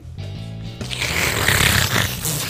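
A person blowing a long, noisy rush of breath straight into a shotgun microphone at close range, starting about a second in, over background music with steady low notes.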